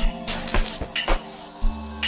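Amapiano song playing with no vocals at this point: a kick drum thumping about twice a second under held keyboard chords, with sharp percussion clicks on top.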